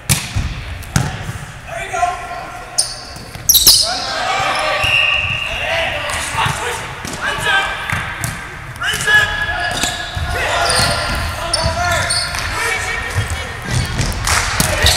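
Volleyball rally in a gym: a series of sharp smacks as the ball is hit back and forth, the loudest a few seconds in, with players shouting calls throughout and the hall echoing.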